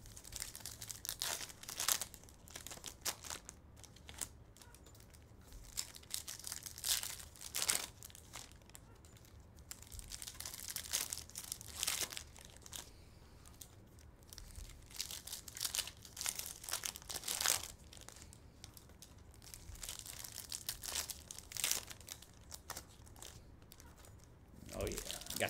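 Trading card packs being ripped open by hand, with foil wrappers tearing and crinkling in irregular bursts.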